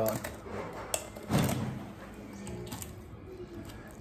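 Kitchen shears snipping up a raw chicken's backbone through rib bones: a few sharp clicks and crunches, the loudest about a second and a half in, then fainter wet handling.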